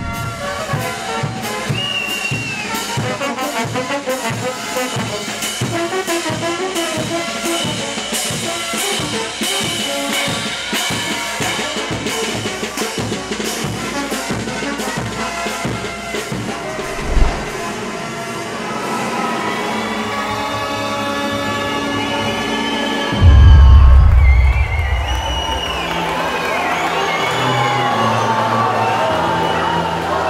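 Brass band music: trumpets, low brass and drums playing over a steady beat. About 23 seconds in, a loud low boom comes in and the music changes character.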